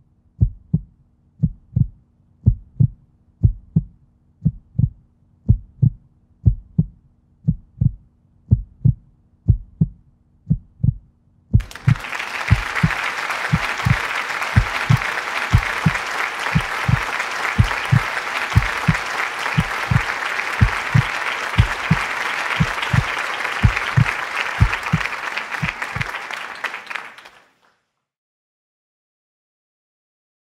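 A low, heartbeat-like thump repeating evenly about twice a second, with a faint low hum under it at first. About twelve seconds in, applause starts over the thumps; both fade out shortly before the end.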